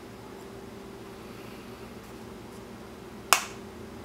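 A single sharp plastic snap about three seconds in as the CardSharp credit-card knife's plastic body is flexed and its locking tongue gives, freeing the blade, over a steady low hum.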